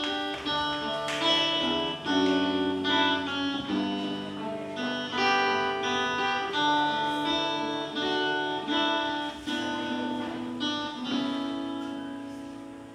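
Acoustic guitar playing the instrumental introduction to a worship song, a steady run of picked and strummed notes ringing out, fading slightly near the end.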